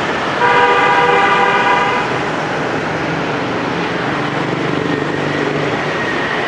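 A vehicle horn sounds once, held steady for about a second and a half. It sits over the constant noise of busy street traffic with motorbikes passing.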